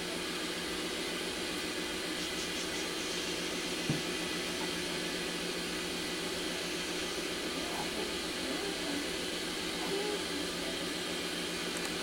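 Steady hiss of running medical test equipment with a constant low hum, and a single short click about four seconds in.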